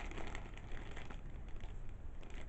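Faint crinkling of plastic packaging being handled, with a few soft clicks over a low steady hum.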